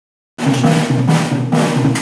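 Rock band playing loudly: a drum kit with crashes about twice a second over bass and electric guitar. It cuts in abruptly about a third of a second in.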